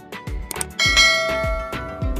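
Background music with a steady drum beat; about a second in, a bright bell chime rings out and fades, the notification-bell sound effect of a subscribe-button animation.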